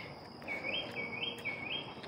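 Outdoor animal chirps: three short notes, each rising in two steps, about two a second, over a steady high insect drone.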